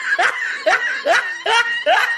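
A person laughing in short, rhythmic bursts, about two a second, each rising in pitch.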